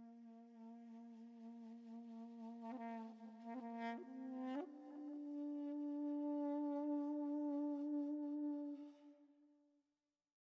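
A shofar blown in one long blast. It holds a steady low note that cracks briefly a few times, then breaks up to a higher note held for about four seconds before fading out near the end.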